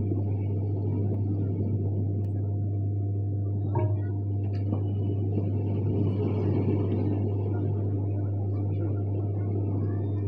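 A steady low hum over a dull, constant rumble, with one brief knock about four seconds in.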